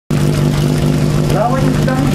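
Portable fire-pump engine running at a steady idle, a constant low hum. A voice starts speaking over it about halfway through.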